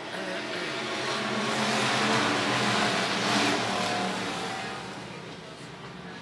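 A pack of dirt-track hobby stock race cars accelerating past on a restart. The combined engine noise swells to a peak about two to three and a half seconds in, then fades as the field goes by.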